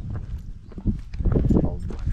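Footsteps on rough stone ground, a run of irregular scuffing steps that picks up after about a second, over a steady low rumble.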